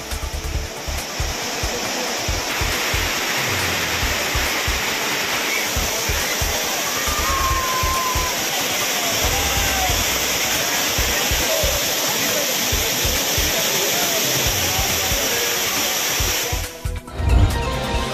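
A large waterfall pouring down in a steady rush of water, cutting off abruptly shortly before the end.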